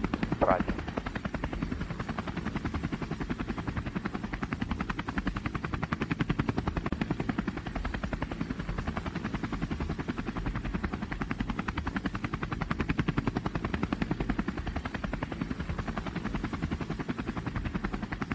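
DJI Phantom quadcopter's motors and propellers buzzing steadily in flight, a fast, even pulsing.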